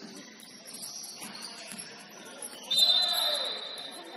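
Indoor basketball game in an echoing gym: players' voices and court noise, with a sudden loud, high-pitched squeal about three-quarters of the way through that fades over about a second.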